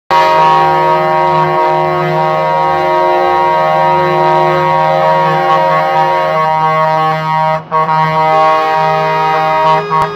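Scania trucks' horns sounding together in a loud, sustained chord of several notes, with the notes shifting a few times and a brief break about seven and a half seconds in.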